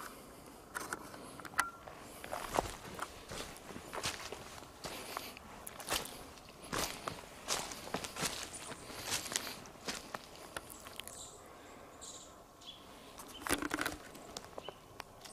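Footsteps crunching over leaf litter and twigs on a forest floor, an irregular run of steps that thins out about ten seconds in, then a louder cluster of crunches near the end.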